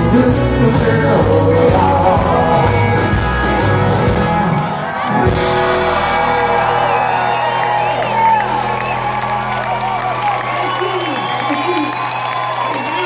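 A live band with electric and acoustic guitars and drums plays out the song's ending. After a brief break and a final hit about five seconds in, a chord is held while the crowd cheers and whoops.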